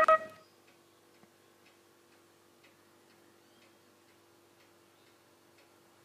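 Background music cutting off about half a second in, then near silence with faint, roughly regular ticking about twice a second over a faint steady hum.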